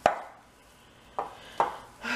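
Hands kneading sticky cheese-and-almond-flour dough in a glass bowl: a sharp slap or knock at the start, then two more close together about a second and a half in.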